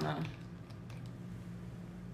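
A few faint plastic clicks as a screw cap is twisted open on a bottle of liquid cleaner. A steady low hum runs underneath.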